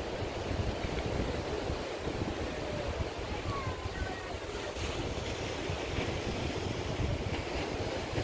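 Steady wind noise on the microphone mixed with the wash of ocean surf.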